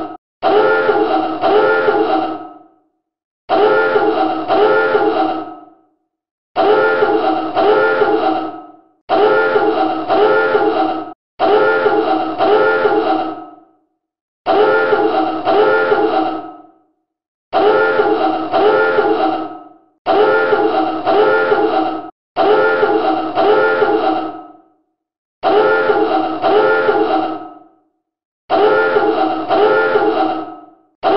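Submarine dive alarm sounding in repeated blasts, roughly one every two and a half to three seconds; each blast is a pulsing klaxon tone, about three pulses long, that dies away before the next. It is the signal that the boat is about to dive.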